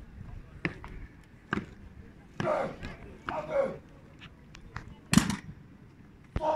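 Scattered sharp knocks of an honour guard's drill on a stone pavement, boots and rifle butts striking, with one loud stamp about five seconds in. Brief voices are heard in the middle.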